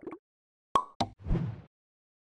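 Animation sound effects: two sharp pops about a quarter second apart, followed at once by a short whoosh with a low thud, as on-screen text pops in.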